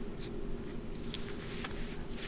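Pen writing small digits on paper: a few short, faint scratchy strokes, over a steady low hum.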